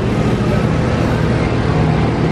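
Steady low drone, like an engine or motor running, with no sharp events.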